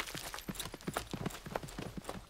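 A quick, uneven run of light taps and knocks, as of things being moved about on a wooden bookshelf.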